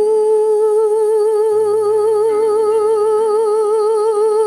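A woman's voice holding one long final note with steady vibrato over a soft karaoke backing track, whose low accompanying notes change twice.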